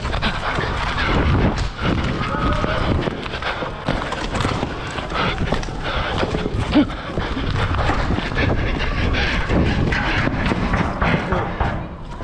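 Wind rushing over a helmet or handlebar action camera's microphone during a fast bike ride, with bumps and knocks from the ride and indistinct voices mixed in.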